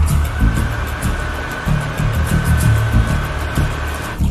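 Electric wall-mounted hand dryer blowing with a steady whine, cutting off suddenly near the end, over soundtrack music with a deep pulsing beat.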